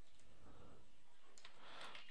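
Faint clicks of a computer keyboard as a few keys are typed, spaced irregularly.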